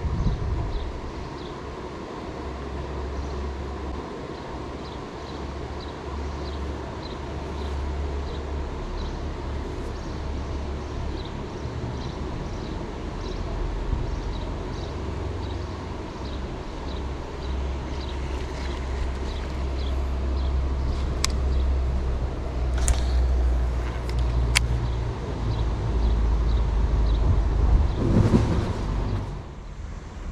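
Outdoor riverbank ambience: a steady low rumble that swells and fades, with faint, evenly spaced ticking high up and three sharp clicks in the second half.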